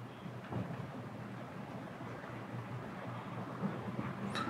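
Quiet, steady low hum of background noise with a few faint soft ticks.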